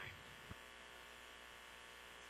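Near silence: the faint steady hiss and hum of the launch-control audio feed between calls, with one faint click about half a second in.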